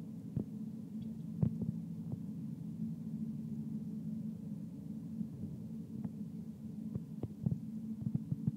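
Steady low machine hum with a few faint clicks scattered through it.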